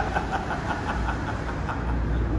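Two men laughing, the laughter fading over the first second or so, over a steady low rumble.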